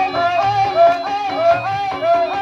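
Traditional East Javanese jaranan accompaniment music: a high, wavering melody changing note every few tenths of a second over low drum strokes.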